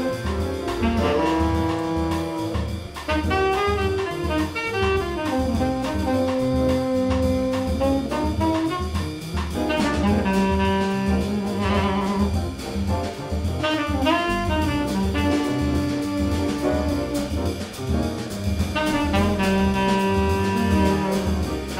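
A small jazz group playing. A saxophone plays long held notes and quick runs over a steady walking bass line and drums.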